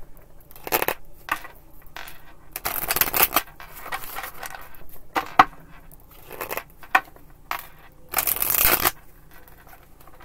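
A deck of tarot cards being shuffled by hand: papery riffling bursts, the longest about three seconds in and near the end, with a couple of sharp card clicks in between.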